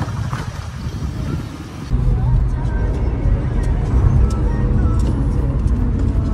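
Street noise for about two seconds, then a sudden change to the steady low rumble of a car's engine and tyres heard from inside the cabin, with faint voices over it.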